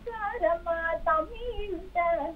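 A young woman singing a classical devotional song, holding long notes that bend in pitch, heard thin through a phone line.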